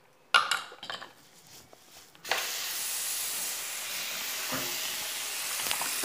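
A sudden knock about half a second in, then, a little over two seconds in, a bathroom sink tap turns on and water runs steadily into the basin.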